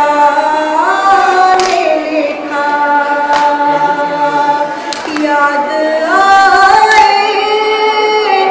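A woman's voice chanting a Shia mourning elegy without instruments, in long held notes that slide up and down between pitches.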